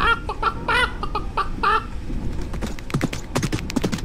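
Short, pitched animal-like calls with a wavering pitch, several a second, for about the first half; from about halfway, a quick, uneven run of sharp clicks or taps.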